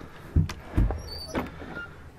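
Wooden overhead cabinet door being opened by hand: two low thuds and a few clicks from the door and latch, with a brief high squeak about halfway through.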